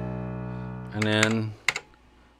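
A held electric-piano chord dying away, then a single short low note sounded about a second in, followed by two quick clicks.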